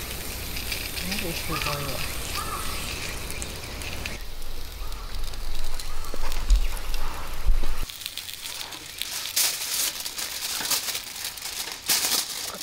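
A wood fire crackles in a small stainless-steel camp wood stove over a steady background noise. There are quiet voices early on, and a low rumble cuts off suddenly about eight seconds in. Sharp crackles are more frequent in the last few seconds.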